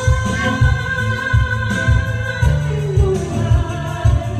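A woman singing a Tagalog song into a microphone over an amplified backing track with a steady bass beat. She holds one long note until about two and a half seconds in, then lets it fall.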